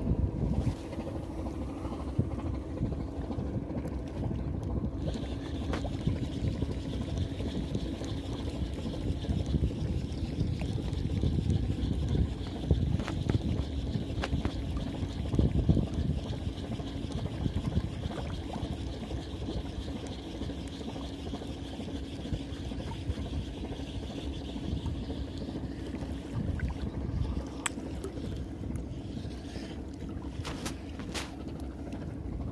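Muffled rubbing and knocking of a phone microphone pressed against shirt fabric, over a steady low hum and a faint high whine.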